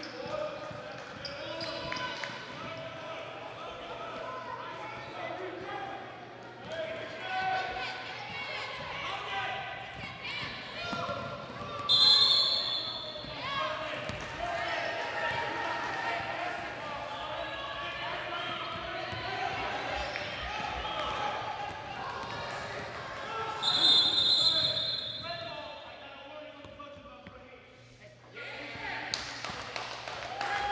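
Basketball dribbling on a gym floor under steady crowd chatter in a large hall. A referee's whistle blows twice, about twelve and about twenty-four seconds in, each a short shrill blast and the loudest sounds heard.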